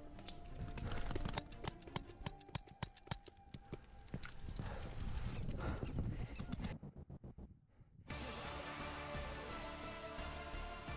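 Rapid, irregular paintball gunfire: many sharp pops and cracks in quick succession for about the first seven seconds. After a short quieter gap, background music from about eight seconds in.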